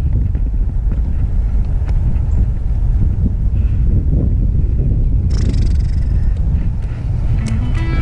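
Wind buffeting the microphone: a loud, rough low rumble throughout. Music fades in near the end.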